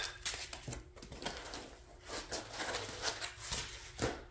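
Handling noise: scattered soft clicks, taps and rustles as parts of a laser engraver kit are moved about in their foam packaging and beside metal frame pieces.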